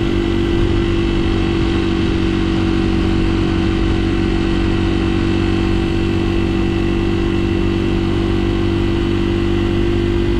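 Honda XR80R's single-cylinder four-stroke engine running at a steady pitch under way, heard from the bike. There is no change of revs through the stretch.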